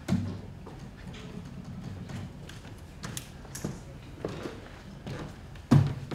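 Scattered taps, clicks and knocks of handling at a lectern and laptop, over a low steady hum, with one louder thump near the end.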